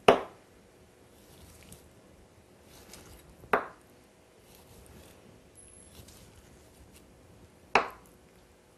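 Kitchen knife knocking onto a wooden cutting board three times, a few seconds apart, the first knock the loudest, as orange segments are cut free from their membranes. Very faint cutting sounds in between.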